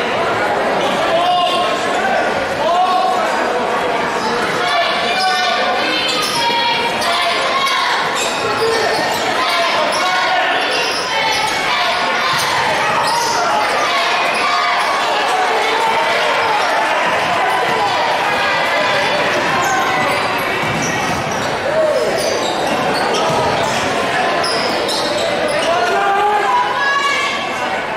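Spectators' voices filling a school gym during a basketball game, many people talking and calling out at once at a steady level, with a basketball bouncing on the hardwood court.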